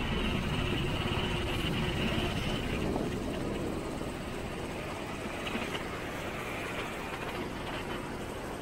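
Steady rumble of road and engine noise from a car driving along a town street. It eases slightly about three seconds in.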